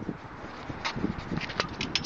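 Footsteps and shoe scuffs on a concrete deck, with light wind rumble on the microphone; no engine running.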